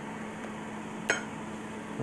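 A single light clink about a second in, a metal fork touching the plate, over a steady low background hum.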